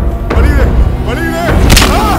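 Film fight soundtrack: a man crying out in pain in drawn-out wails, and a heavy hit sound effect with a deep boom about three-quarters of the way in.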